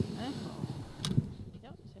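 Brief speech with irregular low thuds underneath and a single sharp click about a second in.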